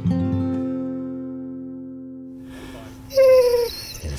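A single strummed acoustic guitar chord rings and slowly fades as a music sting. Near the end a dog gives a short falling whine.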